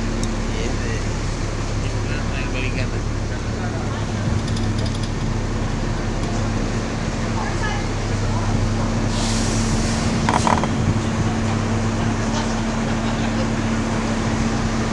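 Steady drone of a bus engine and street traffic, heard from the open upper deck of a moving sightseeing bus, with a brief hiss about nine seconds in.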